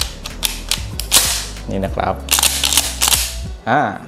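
Mossberg 590A1 pump-action shotgun being racked by hand: the fore-end slid back and forward with metallic clacks and sliding rasps, in two runs, the first in about the first second and the second a little after two seconds.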